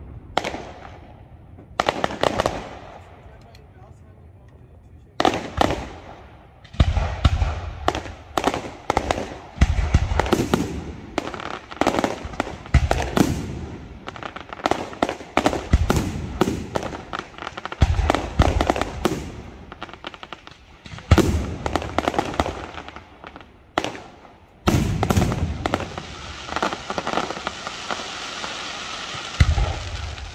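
Aerial firework shells bursting in a large display. A few separate bangs come in the first seconds, then dense volleys of sharp bangs and booms follow one after another, with a steadier hiss near the end.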